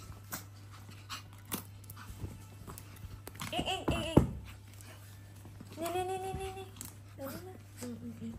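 A small long-haired dog burrowing and tussling in bath towels: rustling and scratching clicks throughout. Two drawn-out high-pitched calls come through, one about three and a half seconds in that ends in a sharp loud peak, and a steadier one about six seconds in.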